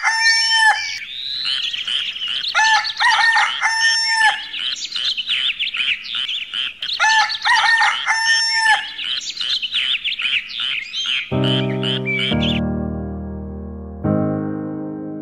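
A rooster crowing three times, a few seconds apart, over a steady chorus of chirping small birds. Piano or keyboard chords come in near the end as the birdsong stops.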